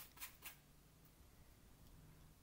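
A few faint strokes of a paintbrush on canvas in the first half second, then near silence: room tone.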